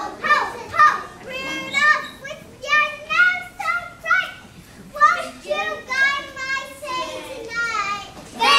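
Young children's high voices chattering and calling out in short phrases, several at once.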